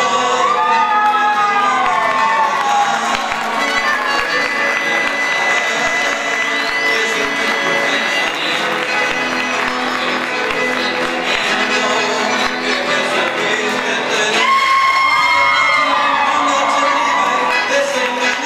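Live chamamé music: accordion and guitar playing steadily, with a man's voice singing into a microphone near the start and again from about three-quarters of the way through. A crowd cheers over the music.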